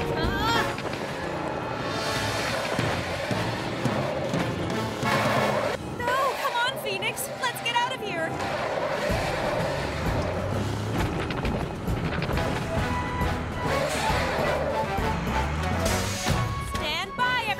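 Animated-series background music playing throughout, with short wordless vocal sounds from a character near the start and again about six to eight seconds in.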